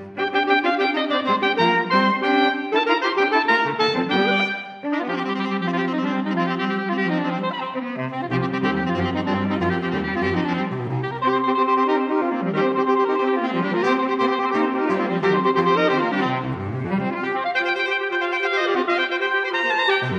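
Saxophone quartet (soprano, alto, tenor and baritone saxophones) playing together in several-voice harmony, with a brief break about five seconds in.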